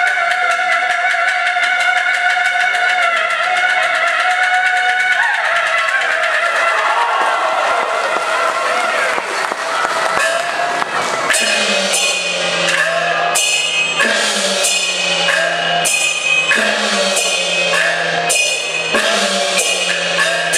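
Peking opera aria sung by a woman over a recorded accompaniment, with long held notes in the first few seconds. From about eleven seconds in, a Peking opera percussion passage of drum, gong and cymbal strokes takes over, about two strokes a second.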